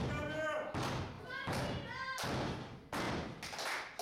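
A run of thuds in a wrestling ring, about one every three quarters of a second, with voices calling out between them as a wrestler works to rally the crowd.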